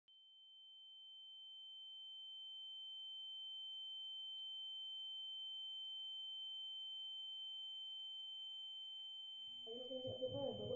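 A steady high-pitched electronic tone with a fainter lower tone beneath it, fading in over the first few seconds and then holding unchanged, like a tinnitus ring. It gives way to a woman's voice just before the end.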